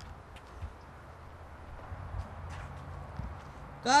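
Footsteps on a concrete driveway, a few soft taps and scuffs, over a faint low steady hum.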